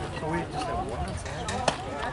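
Background voices of players and spectators at a youth baseball game, with one sharp crack near the end as a bat strikes the pitched ball.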